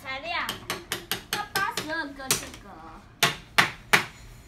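Wooden building-toy parts clicking and knocking against each other and against the wooden drawers as they are handled, a quick run of sharp clacks with three louder knocks near the end. Brief high children's voices are heard in between.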